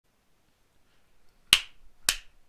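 Near silence, then a single sharp snap about one and a half seconds in.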